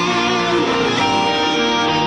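Heavily distorted electric guitar playing a melodic death-metal part, with notes held for up to a second or so.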